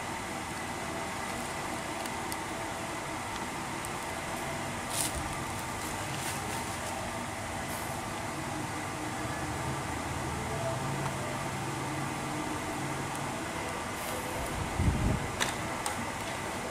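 Steady background noise, like a running fan or air conditioner, with a few faint clicks as the phones are handled and a low bump near the end as they are set down.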